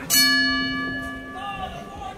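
Boxing ring bell struck once to start the round, ringing out clear and fading over about a second and a half.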